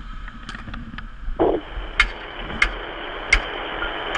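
Hiss of an open fire-radio channel between transmissions, fuller from about a second and a half in, with three sharp clicks or knocks in the second half.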